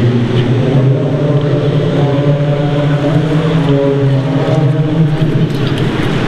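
A steady low mechanical drone with several held tones, easing a little near the end.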